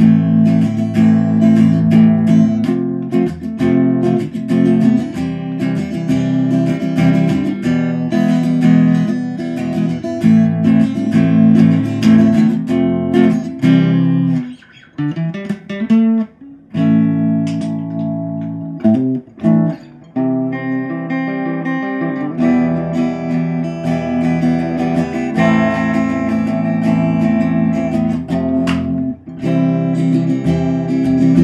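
Electric guitar played clean through the modded clean channel of a Jet City JCA20H valve amp head: strummed and picked chords ringing out. About halfway through the pitch slides down and back up, followed by a few short breaks before the playing resumes.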